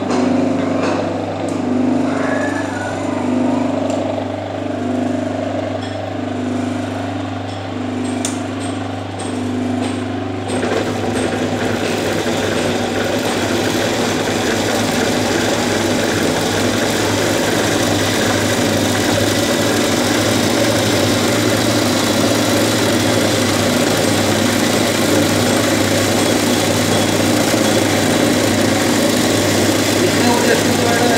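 Chikan embroidery sewing machine: a steady motor hum with a slow pulsing about once a second for the first ten seconds, then the stitching head running fast and steady from about ten seconds in, a dense, even mechanical whir.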